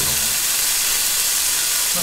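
A thin slice of Sendai beef marushin (knuckle) sizzling steadily on a hot slotted grill plate.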